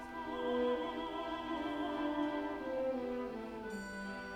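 A woman soloist singing slow, held notes with vibrato in a classical style, over an orchestra with bowed strings.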